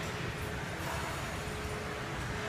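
Steady room noise of a gym, with a faint steady hum running underneath.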